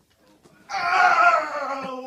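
A loud drawn-out wailing voice starting under a second in, slowly falling in pitch.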